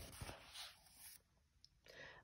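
Faint rustle of a picture-book page being turned by hand, dying away to near silence after about a second.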